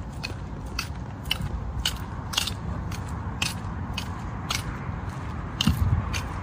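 Footsteps on a paved path: short crisp shoe scuffs at a steady walking pace of about two a second, over a low rumble, with a louder bump near the end.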